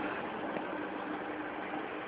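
Steady background noise of the recording: an even hiss with a faint low hum.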